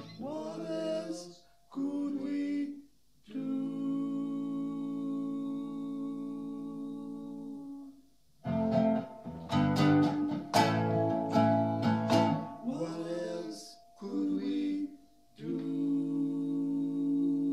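Acoustic guitar music with a voice: phrases of plucked chords broken by short gaps, one chord held for about four seconds in the middle, then a busier run of plucked notes.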